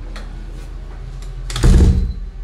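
A loud, short thump near the end, over a steady low hum and a few faint clicks.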